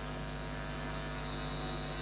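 Steady electrical mains hum in the recording, a low buzz with a faint high whine above it.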